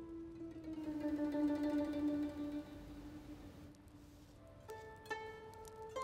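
Solo pipa playing a slow melody: long notes sustained with a shimmering tremolo, then sharply plucked new notes near the end.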